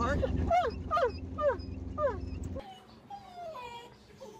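A big dog whining excitedly in a quick run of about five short cries, each falling in pitch, over the steady rumble of an open car driving. About two and a half seconds in, the car sound cuts off and softer, gliding dog whimpers follow.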